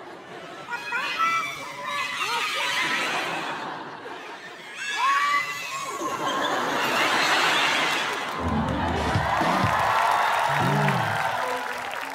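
Studio audience laughing and shouting over music, with high squeals through the crowd noise. Near the end comes a low, drawn-out voice-like sound.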